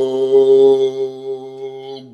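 A man's voice holding one long, steady low vowel, the word "whole" drawn out like a chant, fading over the last second.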